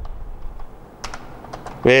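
Typing on a computer keyboard: a run of separate, irregularly spaced key clicks.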